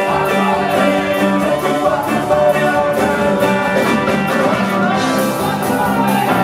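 Live band playing an upbeat rock-and-roll number, electric guitar, drums and keyboards over a steady beat, with several band members singing together.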